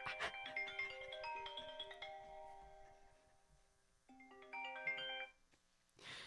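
Mobile phone ringtone: a melody of quick, bright notes that rings out and dies away, then starts over about four seconds in and cuts off abruptly just after five seconds.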